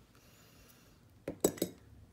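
Small metal clinks from jewellery pliers and gold jump-ring findings being handled: two sharp little clinks about a second and a half in, after a quiet stretch.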